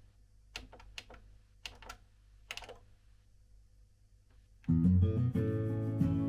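A few faint clicks as the Onkyo CD player's front-panel buttons are pressed. About two-thirds of the way in, guitar music starts suddenly and loudly as the player begins playing the disc through the speakers, a sound the owner calls horrendous and pretty distorted.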